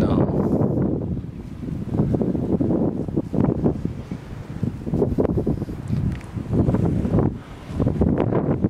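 Wind buffeting the camera's microphone: a loud, low, rough rumble that comes in gusts, swelling and dropping every second or so.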